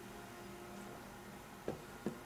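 A drinking glass set down on a table: one short knock near the end, over a faint steady hum.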